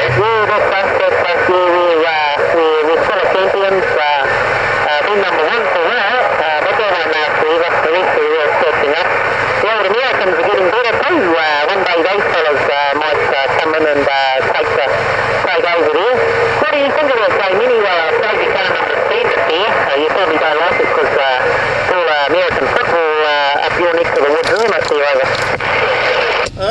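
A distant station's voice received over an HR2510 10-metre radio's speaker on 27.085 MHz (CB channel 11), talking continuously through a steady static hiss and too garbled to make out.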